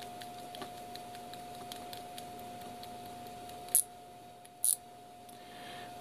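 Faint, irregular ticking from an iGaging digital micrometer as its thimble is turned to close the measuring faces, then two sharp clicks about a second apart as the spindle is seated for zeroing.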